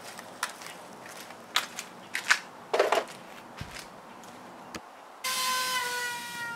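A few light knocks and a brief clatter from 2x4 lumber being handled. About five seconds in, an electric router with a quarter-inch round-over bit starts a steady whine that drops slightly in pitch.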